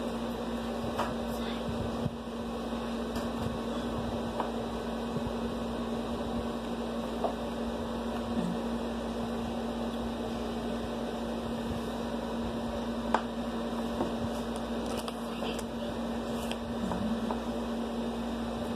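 A steady, even hum under constant room noise, with a few faint clicks.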